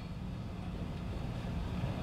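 Steady low hum of background room noise, with no other event standing out.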